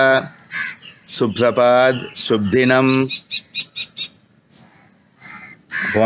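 Crows cawing in the background over a man's voice, with a rapid series of short, sharp notes around the middle.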